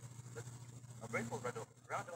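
Indistinct speech over a video-call connection, with a steady low hum underneath that cuts off near the end.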